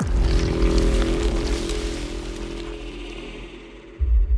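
Trailer sound design: a sudden deep boom that sets off a heavy low rumble and a sustained dark drone of held tones, slowly fading away.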